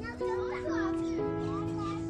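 Background music with long held notes, over which children's high voices are heard briefly in the first second.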